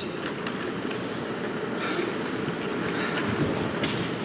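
A theatre audience applauding, a steady even wash of clapping that holds at one level throughout.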